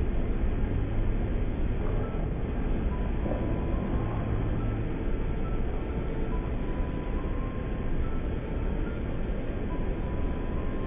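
A steady low rumble of background noise with no clear events, with a few faint short tones mixed in.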